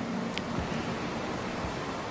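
Steady hiss of background room noise in a large church, with one faint click about half a second in.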